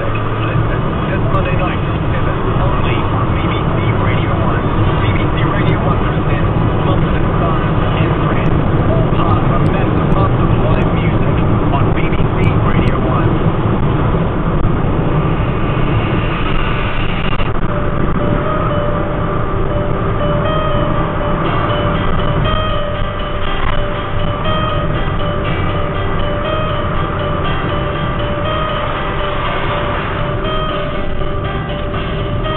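Car cabin noise while driving, a steady rumble of engine and tyres, with a car radio playing talk and music; from a little past halfway the radio carries music with held notes.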